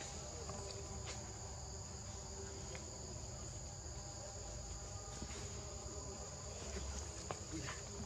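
Steady high-pitched insect chorus, an unbroken outdoor drone of crickets or similar insects.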